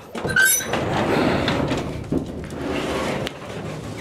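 Metal up-and-over garage door being opened: a short squeak about half a second in, then a long run of scraping noise as the panel swings up, with a sharp click a little after three seconds.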